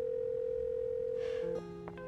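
Telephone ringback tone heard through the caller's phone: one steady ring lasting about two seconds, stopping about one and a half seconds in as the call is answered. Soft background music with sustained notes then comes in, with a faint click near the end.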